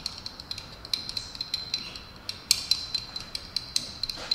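A brush stirring egg yolk and water in a small glass jar to make egg tempera binder, clicking against the glass in quick, irregular light ticks, one sharper click about two and a half seconds in.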